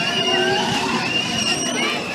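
Fairground noise around a running spinning carnival ride: steady machinery noise mixed with voices and high wavering squeals.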